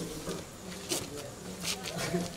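Quiet, low talk between louder speech, with short hissing sounds and a faint steady buzz underneath.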